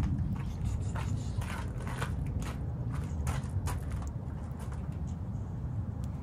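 Handling and rummaging through stored belongings inside a minivan: a run of light scrapes, rustles and small knocks over a steady low background rumble.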